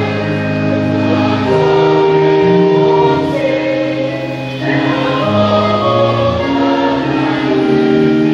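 Choir singing a church hymn in long held notes.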